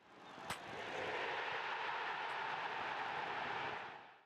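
End-card sound effect: a steady rushing noise that swells in, with a sharp click about half a second in, and fades out near the end.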